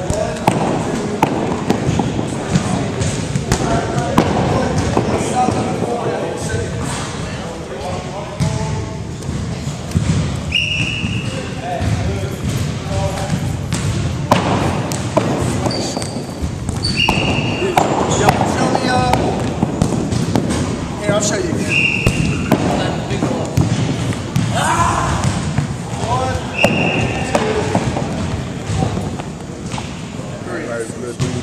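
Echoing gym ambience: background chatter of voices, frequent knocks and thuds of balls bouncing on the hardwood floor, and several short high sneaker squeaks on the wood.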